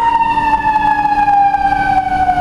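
Emergency vehicle siren sounding loudly in street traffic, one long tone gliding slowly downward in pitch.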